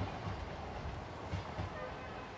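A passenger train running away down the track, its wheels rumbling low and thudding now and then over the rail joints as the sound slowly fades.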